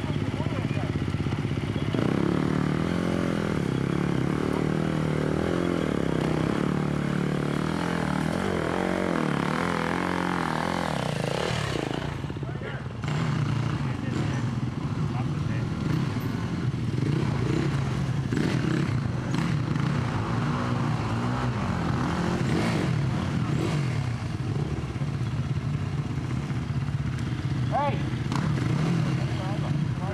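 Dirt bike engine revving and labouring as the bike climbs a muddy, rocky trail section, the revs rising and falling over and over, with a brief drop about twelve seconds in.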